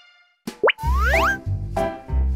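Cartoon sound effects: after a brief silence, a quick rising pop and then a longer rising whistle, as upbeat children's background music with a steady beat starts about a second in.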